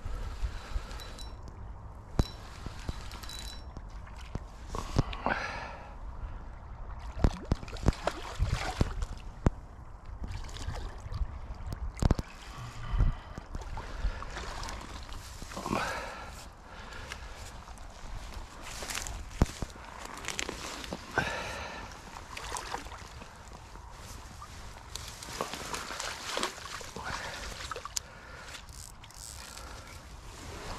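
Water sloshing and splashing at the river's edge around a landing net, with scattered knocks and rustles from handling close to the microphone.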